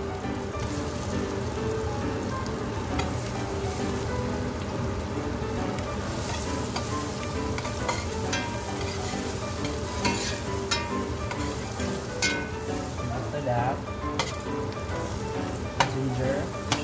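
Red onion and garlic sizzling steadily in hot oil in a stainless steel pot. They are stirred with a metal spoon whose scrapes and clicks against the pot become more frequent in the second half.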